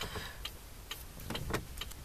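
Faint, irregularly spaced light clicks and ticks, about six in two seconds, over a low steady hum.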